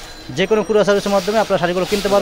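Speech only: a person talking fast in a sales patter, after a brief pause at the start.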